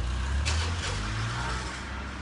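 Low, steady rumble of a motor vehicle engine running, its pitch drifting slightly about halfway through.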